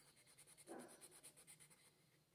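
Faint, rapid back-and-forth scratching of a colored pencil shading a printed workbook page. The strokes die away about one and a half seconds in.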